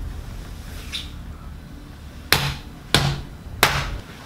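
Three short, sharp knocks, evenly spaced about two-thirds of a second apart, in the second half, over a low steady room hum.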